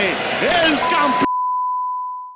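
A football commentator's voice from a TV broadcast, cut off abruptly just past a second in. A steady single-pitch beep starts under the voice and holds on alone after it.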